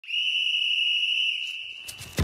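A single steady, high-pitched electronic tone that is held and then fades away over the last half second or so, with a short click near the end. It is the sound effect of an animated logo intro.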